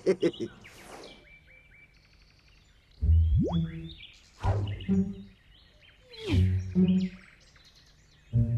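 Animated-cartoon forest soundtrack: faint bird chirps, then from about three seconds in four loud, low comic sound effects, the first with a quick rising whistle-like slide.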